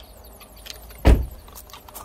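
A single heavy, dull thump about a second in, with a few light ticks from footsteps on gravel around it.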